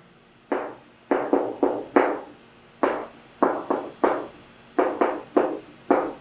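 Chalk writing on a chalkboard: a quick, irregular series of about fourteen short strokes and taps, each starting sharply and dying away fast.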